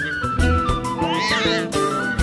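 Background soundtrack music: a stepping high melody over pulsing low bass notes. About a second in, a brief cluster of high warbling glides.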